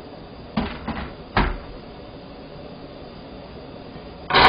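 A dish being handled and set down on the table: two light knocks, then one sharper clack about a second and a half in, over a steady low background noise.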